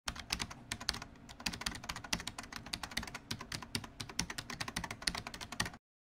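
Rapid keyboard typing: a dense, irregular run of key clicks that cuts off suddenly near the end.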